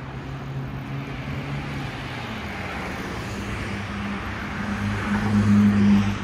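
Road traffic on a city street: a car's engine hum and tyre noise grow louder as it approaches and passes close by, loudest near the end.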